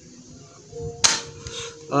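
A single shot from a spring-powered airsoft sniper rifle (an MSR Remington replica, a gel blaster converted to 6 mm BBs): one sharp snap about a second in. The BB feeds and fires normally, without a double feed.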